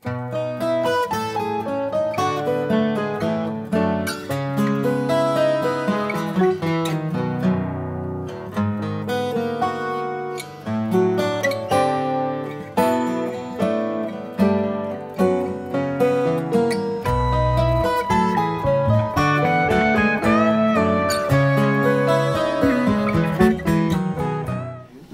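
Studio recording of a band track with an electric guitar, by the player's account most likely his 1965 Fender Stratocaster, playing melodic lines over a moving bass line and band accompaniment.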